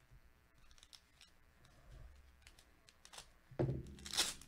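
Faint handling of trading cards and a foil card pack by gloved hands: scattered soft clicks and rustles, with a louder rustle near the end as the pack is picked up.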